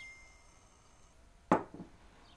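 A glass measuring cup of dry soybeans set down on a wooden countertop: one sharp knock about one and a half seconds in, followed by a lighter knock. At the start, the last ring of a chime note fades out.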